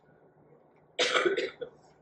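A short throat-clearing cough close to the microphone, about a second in, with faint room hiss around it.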